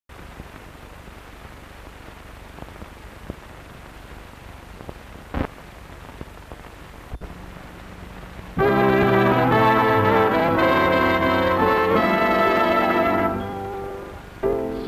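Hiss of an old film soundtrack with scattered clicks and pops for about eight seconds. Then a brass-led dance band suddenly comes in loud with held chords, the introduction to the song, easing off near the end.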